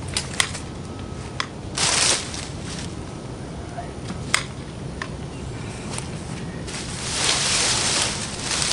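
Leafy shrub branches rustling and twigs snapping as branches are pulled out of a bush: several sharp clicks spread through, with a longer rustle about two seconds in and another near the end.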